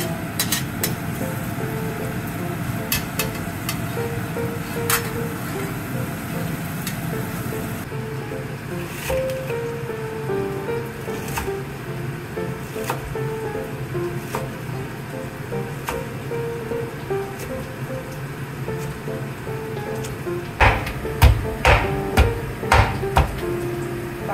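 Background music throughout. In the last few seconds it is joined by a run of loud knocks, two or three a second: a metal meat tenderizer striking garlic cloves on a wooden cutting board to crack them open.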